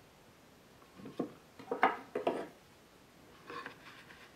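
A steel rule and clamps handled on a wooden shooting board: short scrapes and knocks in three small groups, the loudest just under two seconds in.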